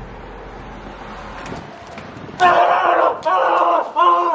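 A low background hum, then about two and a half seconds in, a person yells in two loud, drawn-out shouts.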